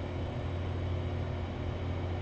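Steady low hum with a faint even hiss underneath: room background noise with no speech and no distinct events.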